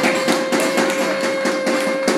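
Hand percussion in a drum-circle jam, quick taps about six a second, under one long steady held note.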